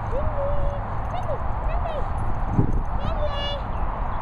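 A high-pitched voice calls out in short drawn-out, sing-song calls several times, over a steady low rumble of wind on the microphone.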